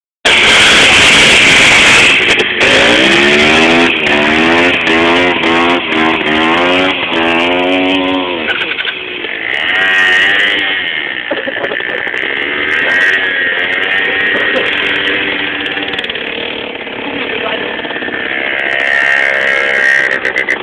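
Small motorcycle engine revving in a quick series of rising surges, each climbing in pitch and dropping back, then running quieter at uneven speed. A loud rushing noise fills the first couple of seconds.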